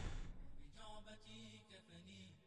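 Faint intro music for the channel's logo: a whooshing sweep dies away at the start, then a held, chant-like voice begins about half a second in.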